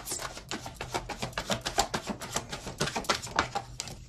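Tarot deck being shuffled by hand to draw a clarifying card: a fast, uneven run of soft card clicks and flicks.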